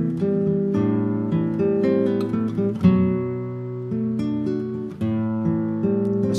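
Recorded acoustic guitar playing an instrumental passage, chords and plucked notes ringing out with a full, woody body sound, and a sharper strum about three seconds in.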